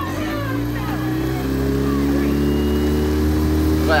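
Outboard motor of a small motorboat running under way, its engine note starting up and holding steady while growing slowly louder.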